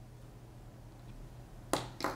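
Quiet room tone with a steady low hum, and one sharp click near the end.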